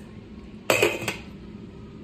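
Stainless steel pot lid clanking against a cooking pot: one sharp metallic clank with a brief ring, followed by a lighter click.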